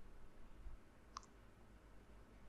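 A single computer mouse click about a second in, over faint room tone.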